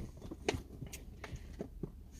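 Faint handling noises: a few light clicks and rustles, the clearest about half a second in, over a low steady hum in the car cabin.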